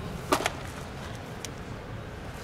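A pitched baseball smacks into a catcher's mitt about a third of a second in: one sharp pop, followed at once by a smaller one.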